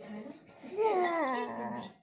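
A child's wordless, drawn-out whine, about a second long, gliding down in pitch.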